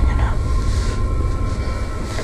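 A loud, steady low rumbling drone with faint held tones above it: an ominous horror-film background drone.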